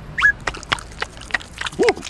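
Cartoon larva character's gibberish vocal sounds: a short sliding squeak at the start and a brief pitched rising-and-falling grunt near the end. Between them comes a run of sharp clicks, roughly four a second.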